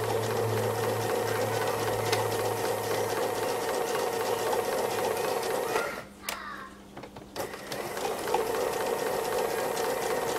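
Domestic sewing machine stitching fast and evenly in free-motion mode, the needle going up and down through layered quilt fabric. It stops for about a second and a half a little past the middle, then starts stitching again.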